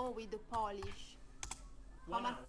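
Computer keyboard being typed on: a few short key clicks as a search word is entered.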